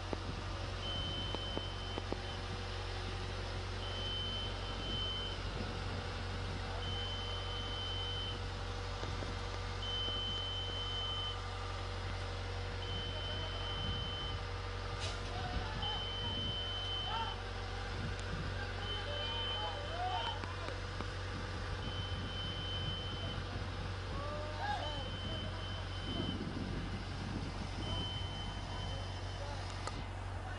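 Warning alarm on the crane lifting the sign, beeping in long even tones about every three seconds over the steady low drone of its engine. A few voices are heard faintly in the middle and near the end.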